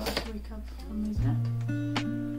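Lo-fi background music with plucked guitar over a held bass line that changes note about a second in, with a few light clicks as washi tape rolls are handled.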